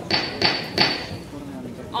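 A gavel struck three times in quick succession, each knock with a brief high ring, calling a meeting to order.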